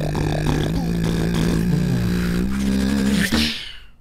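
Live beatboxing into handheld microphones: a hummed bass line that steps between a few notes and slides down and back up, with mouth-made clicks and percussive hits over it. It stops abruptly about three and a half seconds in.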